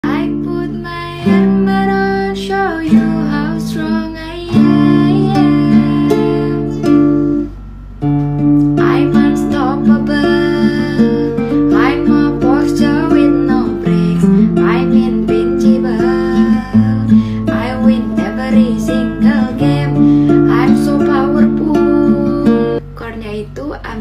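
A woman singing to her own nylon-string classical guitar, a Yamaha C315 capoed at the fifth fret, picked through chords such as F and Am. The voice and guitar break off briefly just before the eighth second, then carry on.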